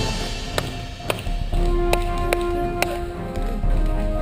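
Paintball markers firing: about five sharp pops spread irregularly over a couple of seconds, with background music running underneath.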